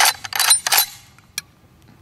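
Magazine being released and pulled from an Auto Ordnance M1 Carbine's magazine well: a sharp metal click, then a short clattering scrape of steel on steel, and one faint click about a second and a half in.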